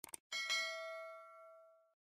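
Two quick mouse-click sound effects, then a bright bell chime that rings and fades out over about a second and a half: a notification-bell sound effect.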